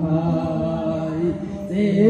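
Devotional chanting: a voice holds long, slowly gliding notes, and a louder, brighter voice comes in near the end.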